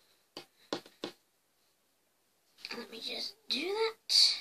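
A child's voice making wordless sounds: three short whispered sounds in the first second, then near the end a murmured hum whose pitch rises steeply.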